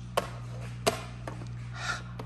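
Toy game pieces knocking together: two sharp clacks about two-thirds of a second apart, then a fainter tap, over a steady low hum.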